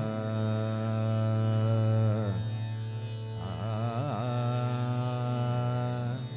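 Harmonium holding steady notes in the opening of a devotional bhajan, with a male voice singing long held notes that waver into ornamented turns.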